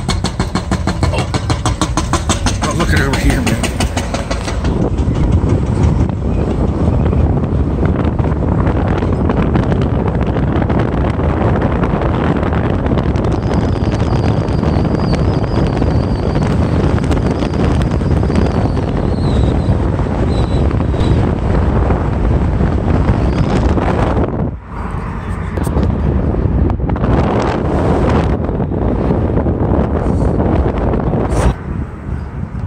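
Car driving along a city street, heard from inside the cabin: steady engine, tyre and wind noise, with a brief lull about two-thirds of the way through.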